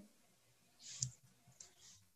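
A faint pause in a conversation, holding a short click about a second in and soft hissy noises around it and near the end.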